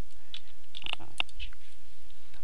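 Computer keyboard being typed on: several short key clicks as a word is typed, over a steady low hum.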